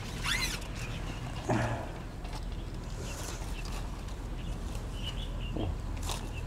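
A short high chirp that sweeps up and down just after the start, then a few fainter scattered chirps over a low steady background: small birds calling.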